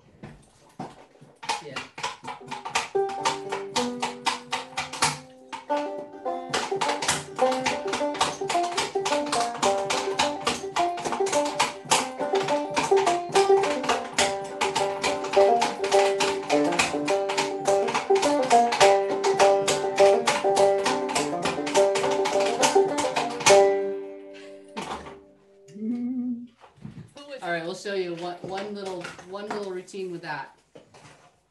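Wooden limberjack doll clattering its feet in a fast, rhythmic jig on a wooden paddle board, accompanied by a banjo tune. There is a short break about five seconds in, and the dance and banjo stop together about three-quarters of the way through.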